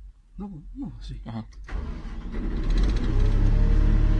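Sany crane's engine started with the ignition key from the upper cab: a low engine sound comes in a little under two seconds in and swells to a steady, loud running note.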